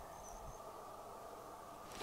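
Faint outdoor quiet with a high, evenly pulsing insect chirp that dies away within the first half second.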